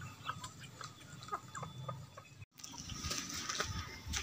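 Faint outdoor background with scattered short animal calls, like those of birds or poultry. The sound drops out briefly about two and a half seconds in.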